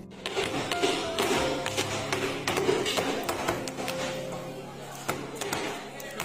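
Background music over repeated, irregular taps and knocks of square metal baking pans of brownie batter being handled and knocked on a table, which settles the batter and knocks out air pockets.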